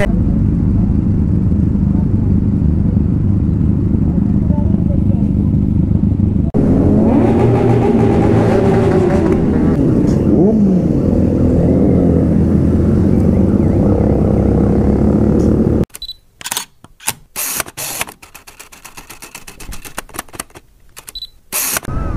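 Motorcycle riding noise: for the first six seconds or so a steady low rumble of engine and wind; after a sudden change, several motorcycles running together, with engine notes rising and falling. The last six seconds hold a run of sharp clicks and short bursts separated by gaps.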